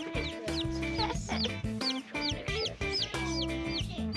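Baby chicks peeping, a quick series of short high peeps about three a second, over background music.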